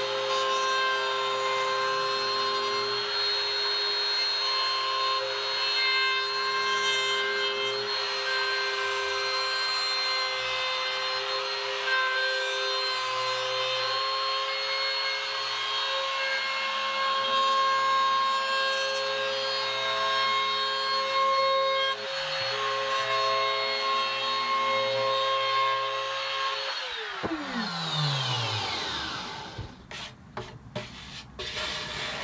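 Trim router with a flush-trim bit running steadily, cutting the overhanging top plate of an acoustic guitar body flush with its sides. About three seconds before the end it is switched off and its whine falls in pitch as the motor spins down.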